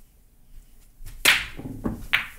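A pool shot: one sharp crack of a cue stick striking the cue ball, a little over a second in, after a quiet start.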